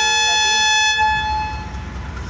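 Diesel locomotive air horn (Pakistan Railways AGE-30 class) sounding one steady blast that cuts off about a second in. After it stops, the locomotive's diesel engine is heard idling low.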